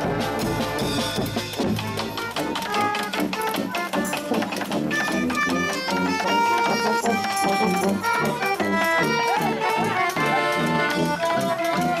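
A live street band playing at close range: accordions with trumpet and tuba/sousaphone, held notes over a busy rhythmic beat.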